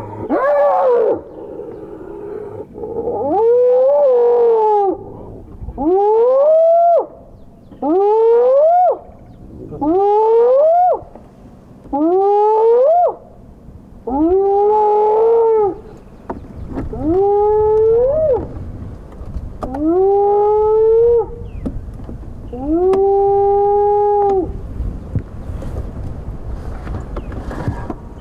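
Spotted hyena calling in a whooping bout: about ten loud calls roughly two seconds apart, each rising in pitch and then holding before it breaks off. The last call is longer and steadier. A tangle of overlapping hyena cries from the fight comes first, and a low vehicle rumble follows the calls near the end.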